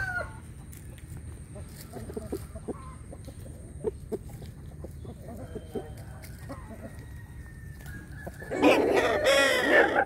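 Fighting rooster giving soft clucks amid light ticks and rustles of dry vines underfoot, then a loud crow about eight and a half seconds in, lasting about a second and a half.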